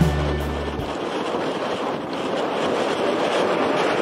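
Background music ends about a second in, then the rushing noise of a low-flying jet aircraft approaching, growing gradually louder.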